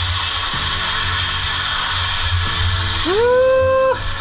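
Water ladled onto the hot stones of a tent-sauna wood stove, hissing steadily into steam (löyly), over background music. A rising, then held, pitched tone comes in about three seconds in.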